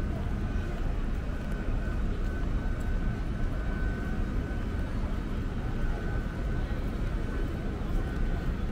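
Outdoor city background noise: a steady low rumble that wavers in loudness, with a faint steady high whine running through it.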